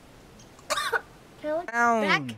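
A boy's voice: one short cough about two-thirds of a second in, then near the end a drawn-out vocal exclamation that falls in pitch.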